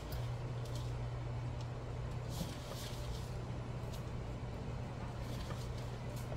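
Faint scraping and rustling as a crumbly oat-and-butter mixture is spooned into a measuring cup, over a low steady hum that starts just as the scooping begins.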